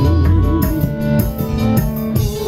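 Live band music on an electronic keyboard with drums. A wavering melody line is heard in the first half second.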